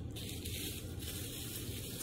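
Soft mouth sounds of biting and chewing a mochi ice cream, a chewy rice-dough shell over ice cream, heard faintly over a steady low room hum.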